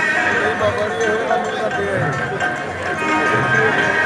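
Live Punjabi dhadi folk music: a wavering melodic line with a few low hand-drum strokes from a dhadd.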